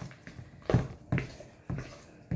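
Spoon stirring thick muffin batter in a stainless steel mixing bowl, with three or four short strokes of the spoon against the bowl's side.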